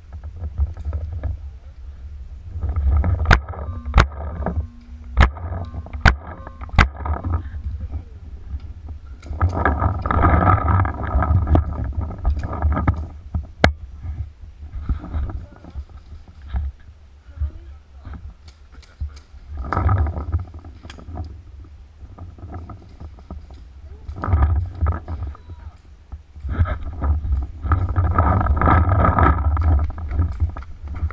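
Paintball markers firing single sharp pops, about five in a few seconds early on and one more near the middle, over a steady low rumble of wind and handling noise on the camera. Louder bursts of distant, unintelligible shouting come and go.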